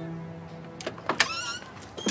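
A door opening: a few sharp latch clicks, then a short creak from the hinge.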